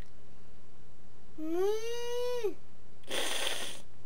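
A young girl imitating a horse with one long call of about a second that rises, holds and falls, sounding more like a cow's moo. A short breathy laugh follows near the end.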